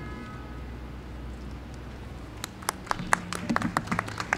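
Room hum picked up by a live podium microphone, then from about halfway through a run of short clicks and knocks from the microphone being handled as it passes to the next speaker.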